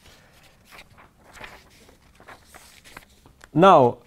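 Faint, irregular footsteps of a man walking across a room. Near the end, a short voiced hesitation sound, pitch rising then falling, much louder than the steps.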